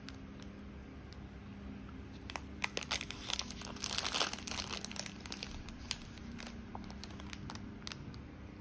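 Thin clear plastic plant wrapping crinkling and crackling as it is handled and pulled off a plant, with the thickest run of crackles in the middle.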